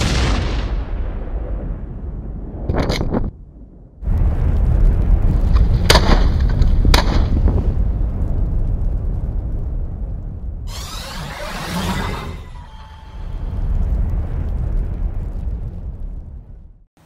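Title-sequence sound effects: a deep boom at the start, then sharp bangs about three, six and seven seconds in over a heavy low rumble, and a sweeping whoosh near twelve seconds.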